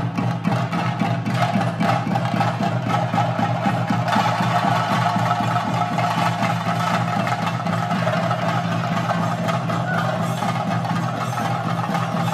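Theyyam drumming: chenda drums beaten fast and continuously with sticks, a dense unbroken run of sharp strikes over a steady underlying tone.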